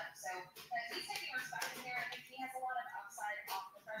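Faint, indistinct speech in the background, much quieter than the nearby talk.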